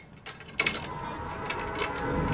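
Light, irregular clicking and rattling that starts about half a second in.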